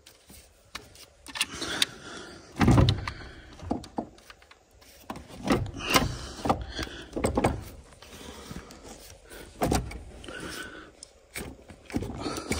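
Irregular knocks, clicks and scrapes of a car battery's plastic case being shifted and pushed into its tray in the engine bay, with a heavier thump nearly three seconds in. The battery is not yet seated.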